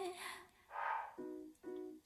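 The last sung note of an a cappella vocal song fades out. A soft breath-like swell follows, then two short, faint vocal notes near the end.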